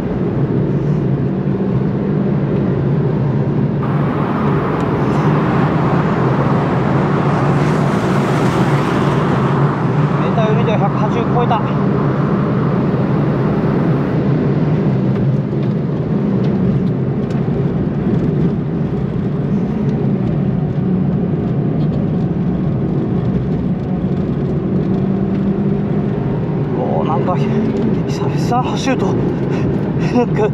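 Suzuki Swift Sport ZC33S's 1.4-litre turbocharged four-cylinder, fitted with an upgraded stock-shape turbo, running hard at speed, heard from inside the cabin as a steady engine drone. A rush of wind and road noise swells over it for several seconds in the middle.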